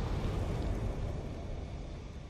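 Deep, noisy rumble of an intro logo sting's sound effect, fading steadily.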